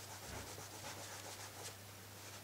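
A white eraser rubbing on a plastic Ghostface mask, a faint, irregular scratchy rubbing as scuff and black marks are worn off the surface.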